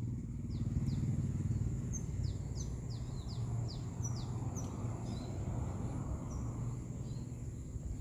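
A bird calling in a quick run of short, downward-sliding chirps from about two to five seconds in, over a steady low hum.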